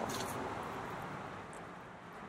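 Faint, steady outdoor background noise, fading slightly, with no distinct event in it.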